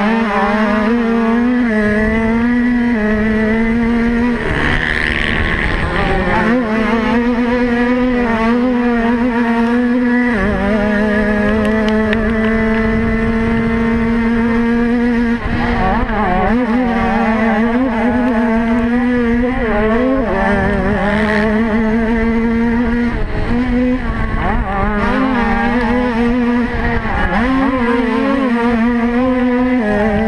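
Motocross dirt bike engine heard from on the bike, running hard at high revs with a steady pitch that dips briefly and climbs again about five times as the throttle is eased and reopened.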